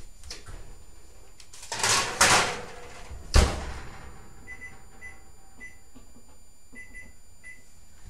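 Electric kitchen oven in use: a noisy scrape about two seconds in as the pan goes in, the oven door shut with a thud a second later, then about six short electronic beeps from the control panel as the timer is set.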